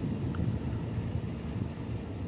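Wind buffeting the microphone on a rooftop: an irregular low rumble that rises and falls.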